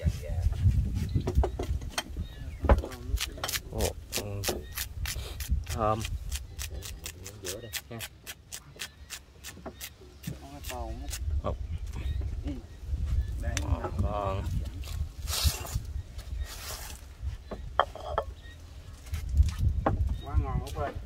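Whole fish grilling in a wire grill basket over a charcoal fire: a quick run of sharp crackles and pops for several seconds, thinning out about halfway, then two short hisses. A low rumble runs underneath.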